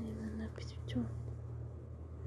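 A person speaking very softly, close to a whisper, in a few short fragments in the first second, over a steady low hum.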